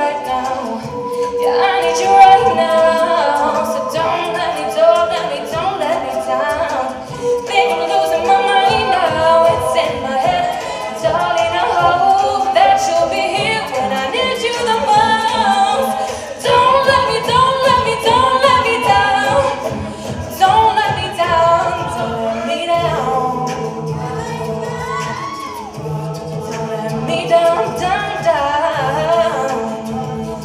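All-female a cappella group singing layered, wordless vocal parts over a steady beat kept by vocal percussion, with a low sung bass line coming in near the end.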